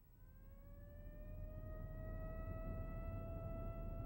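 Emergency vehicle siren wailing over a low rumble, growing louder. Its pitch rises slowly over the first three seconds, holds, then begins to fall near the end.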